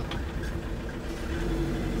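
Steady low drone of a 2005 Ford Transit's diesel engine and road noise, heard inside the cab while the van drives, with the lowest rumble getting a little stronger partway through.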